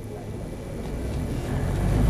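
A low rumble that grows steadily louder.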